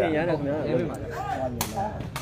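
A single sharp smack about one and a half seconds in, over crowd chatter.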